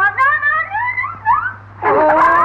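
A high-pitched wailing voice in long, sliding, wavering cries, with a louder outcry starting near the end.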